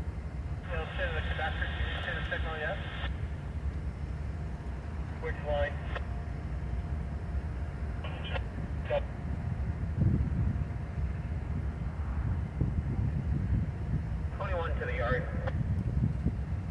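Norfolk Southern diesel locomotive running with a steady low rumble. Several short bursts of thin, narrow-band voice break in over it: about a second in, twice in the middle, and near the end, typical of railroad radio chatter from a scanner.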